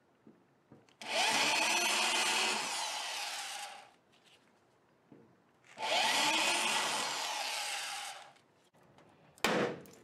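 Corded electric drill boring into the sheet-steel flange of a rear wheel well to drill out the welds holding a patch panel. It makes two runs of about three seconds each; the motor speeds up at the start of each run and winds down at the end. A single sharp knock comes near the end.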